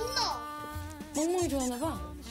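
A steady buzzing tone, several pitches stacked, holds from just after the start. A child's high voice rises and falls over it about a second in.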